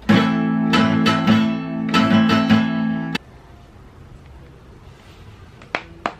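Steel-string acoustic guitar picked and strummed, a chord pattern ringing for about three seconds and then stopping suddenly; the player feels the notes are a little off. A short click near the end.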